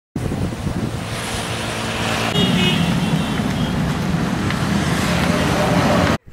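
Loud road traffic noise with a vehicle engine running close by. Short high tones come through about two and a half seconds in, and the sound cuts off suddenly at the edit.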